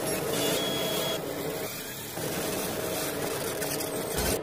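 Sound effects for a news channel's animated logo intro: a static-like, crackling hiss over a steady low drone. The hiss briefly thins a little after a second in, then returns.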